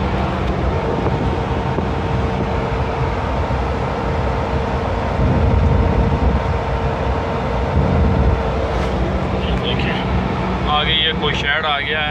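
Ambulance van's engine and road noise heard from inside the cab while driving, a steady hum with a faint whine that stops about eight seconds in.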